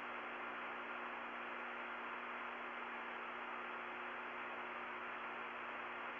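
Steady hiss with a faint hum from an open radio communications loop, heard in a pause between transmissions.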